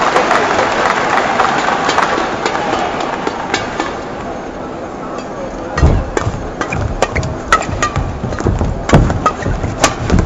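Arena crowd noise through the wait for the serve, then a badminton rally from about six seconds in: sharp racket strikes on the shuttlecock, irregular every half-second or so, mixed with players' footsteps thumping on the court.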